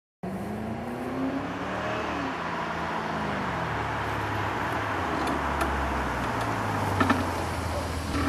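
A car's engine running as it drives up the street. Its pitch rises and then falls away in the first few seconds over a deep steady rumble that grows a little louder later on.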